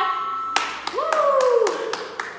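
A series of sharp hand claps at an uneven pace, with a drawn-out vocal call falling in pitch in the middle, over background music.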